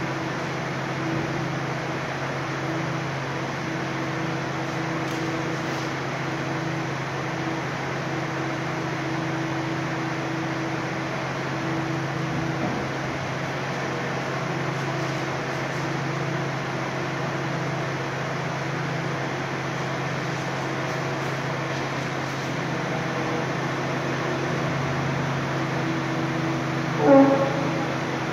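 Steady mechanical drone with a low hum, from the low-loader's engine and machinery running while a railway carriage is drawn slowly up the ramps onto the trailer. A short, louder sound breaks in about a second before the end.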